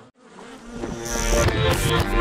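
Cartoon bee buzzing sound effect with jingle music. It cuts out almost to silence just after the start, then swells back in over about a second.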